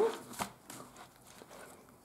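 Paper and card being handled as a flap of a handmade paper journal is opened: one short sharp tap of card about half a second in, then a few faint rustles and ticks.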